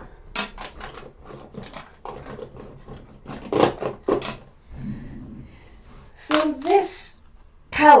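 Small clicks and knocks of makeup items being handled and put away, loudest about three and a half seconds in. A few mumbled words come near the end.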